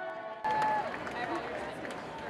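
Background music cut off abruptly about half a second in by the sound of a street protest crowd: many voices at once, with one drawn-out shout that falls in pitch.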